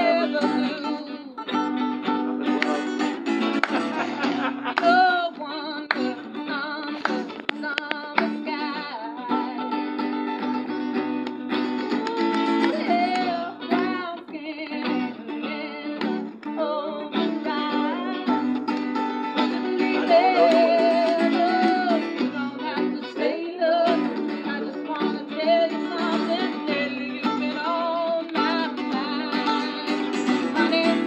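Acoustic guitar being strummed and picked steadily, with a voice singing along.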